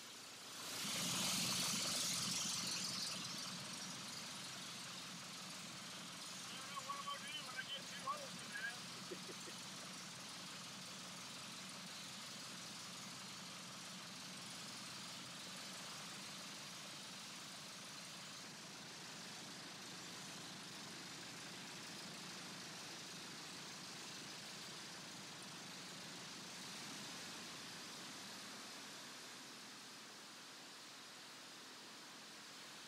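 VariEze's pusher piston engine and propeller running: the sound comes in suddenly about a second in, loudest for the first few seconds, then settles into a steady idle.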